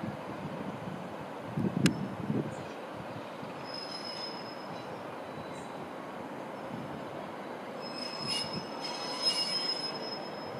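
An InterCity 225 high-speed electric train approaching along the line: a steady rushing rumble, with a high, thin ringing from the rails that shows briefly about four seconds in and comes back stronger near the end as the train nears. A single sharp knock about two seconds in.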